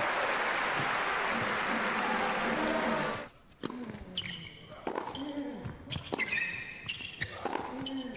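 Arena crowd applauding for about three seconds before an abrupt cut to quieter court sound. A tennis rally then starts: sharp racket strikes and ball bounces on the indoor hard court, with high squeaks from tennis shoes.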